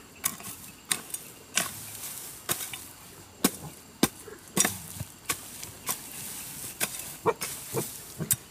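Metal hoe blade chopping into and scraping across dry, tilled soil: irregular strikes, about one or two a second, with scraping between them.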